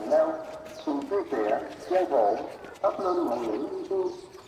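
A high-pitched voice in short phrases, some notes held and others gliding, running almost continuously.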